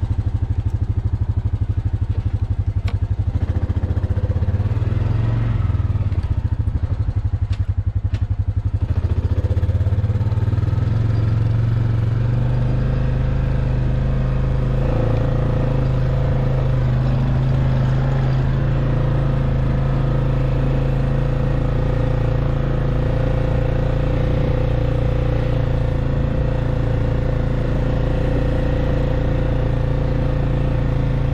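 ATV engine running steadily with a low drone while the four-wheeler rides along a dirt trail; the engine note changes about ten seconds in.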